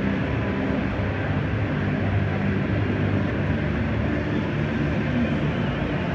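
Steady, low outdoor background rumble with no distinct events.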